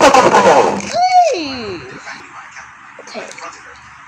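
Beyblade X spinning tops clattering against each other and the plastic stadium, a loud dense rattle for about the first second. A voice follows with one drawn-out falling cry, then only faint rattling.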